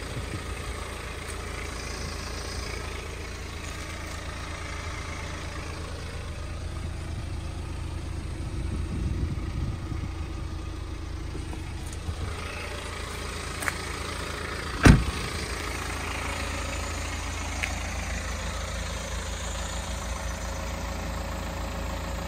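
BMW X1 xDrive20d's 2.0-litre four-cylinder diesel engine idling steadily, with a single loud thump about fifteen seconds in.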